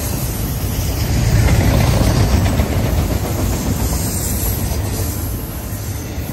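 Autorack freight cars rolling past at close range: a steady rumble of steel wheels on the rails, swelling a little a second or two in.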